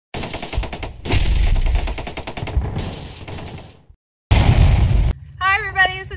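Machine-gun fire sound effect for a logo intro: two rapid bursts of shots, about a dozen a second, the second longer and fading away, followed by a single short blast about four seconds in.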